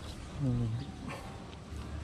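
A man's voice making one short, wordless syllable, like a murmured "mm", about half a second in, over steady low background noise.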